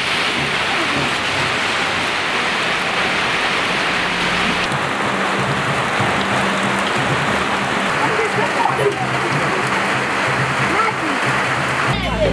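Steady rain pouring down, with faint voices in the background.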